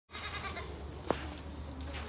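A goat bleats once, a short wavering call in the first half-second. A sharp click follows about a second in, over a steady low rumble.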